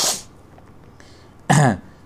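A person's single short vocal sound, like a throat-clearing, about one and a half seconds in, after a pause that holds only faint room noise.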